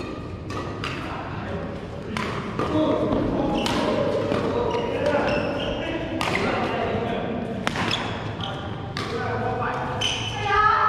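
Badminton racquets striking a shuttlecock in a rally, sharp cracks at irregular intervals every second or so, echoing in a large sports hall, with people talking and calling in the background.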